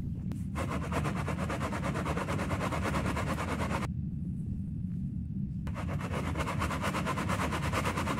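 Dry casting sand poured from a scoop into a metal coffee can, a dense crackling hiss in two pours with a short pause between, over a steady low rumble.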